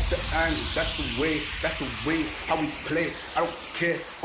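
Breakdown in a bass house DJ mix: the kick drum drops out and a hissing noise sweep falls in pitch over a few seconds, under a pitched vocal or synth line in short, bending phrases.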